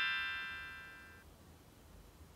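Tail of a bright chime jingle: several held bell-like tones fade away and stop a little over a second in, leaving only faint hiss.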